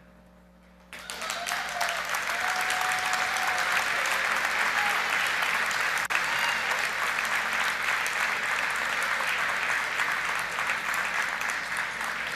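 Audience applauding, the clapping starting about a second in and holding steady, with a momentary dropout about halfway through.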